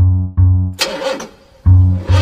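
Cartoon bus horn honking: two short, low, steady honks, then a brief raspier honk about a second in.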